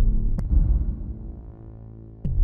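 Dark electronic synth music in an EDM, synthwave and cyberpunk style: a heavy bass hit at the start and another about half a second in, each fading away over a held low drone.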